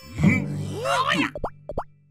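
Cartoon characters' wordless voices, sliding up and down in pitch, followed by quick cartoon plop sound effects in the second half, over a low steady hum.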